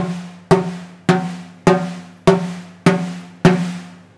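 Finger taps on the snare-side (bottom) head of a snare drum, struck about an inch and a half from the rim with the snare wires held off, to check the head's pitch after tensioning. Seven evenly spaced taps, a little over half a second apart, each giving a short ringing tone that fades; every tap sounds at the same pitch, so the head is tuned evenly.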